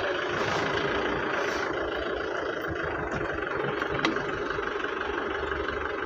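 Steady engine and road noise heard from inside an ambulance van's cab while it is being driven, with one short click about four seconds in.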